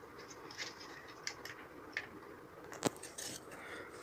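Plastic Lego pieces being handled and fitted together, making faint scattered clicks and rustles, with one sharper click about three seconds in.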